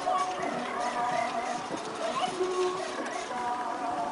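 Indistinct talking of several people, with no clear words.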